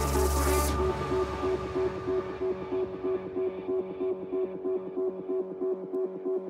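Electronic dance music played live by a DJ. Less than a second in, the bass and the bright top end drop out suddenly, leaving a pulsing synth riff whose treble keeps fading away.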